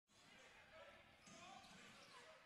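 Near silence: faint basketball-hall ambience, a ball dribbling on the court with distant voices.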